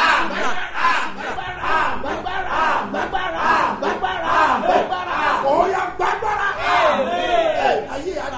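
A man praying aloud in Yoruba, loud and impassioned, without a pause.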